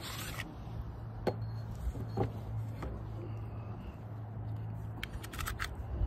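Handling clicks and scrapes from a Pistelle X-68 CO2 pistol as its stick magazine is taken out: a few scattered clicks, then a quick cluster of clicks near the end. A steady low hum runs underneath.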